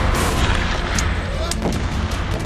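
Black-powder gunfire at a battle reenactment: sharp shots, one about a second in and another half a second later, over a steady low rumble.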